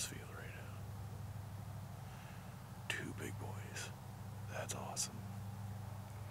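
A man whispering in three short bursts, near the start, around the middle and about five seconds in, over a steady low hum.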